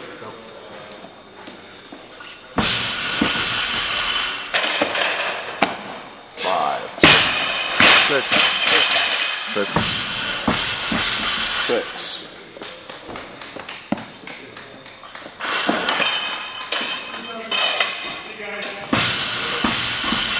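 A barbell loaded with rubber bumper plates dropped onto a lifting platform after a clean and jerk, a heavy thud about seven seconds in with a second impact just after. Gym noise and background music run throughout.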